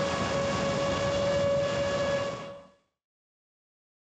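Motors and propellers of a 7-inch long-range FPV quadcopter, heard from its onboard camera: a steady whine over rushing air noise. It fades out about two and a half seconds in.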